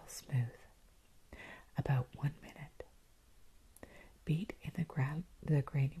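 A woman's soft, partly whispered voice speaking in short phrases with pauses between them.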